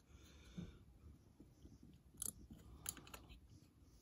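Faint handling noise of the levers being lifted out of an old mortise sash lock: light metallic clicks and scrapes, with two sharper clicks in the second half.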